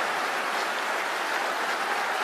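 Large audience applauding, a steady dense clapping.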